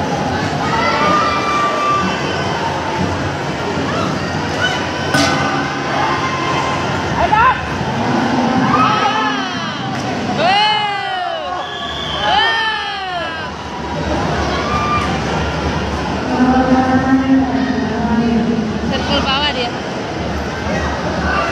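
Spectators shouting and cheering over steady crowd chatter. Two loud, drawn-out shouts rise and fall in pitch about ten and twelve seconds in.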